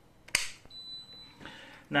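A wall-socket rocker switch clicks on once, and moments later the Tefal CY505E40 multicooker gives a single high beep as it powers up.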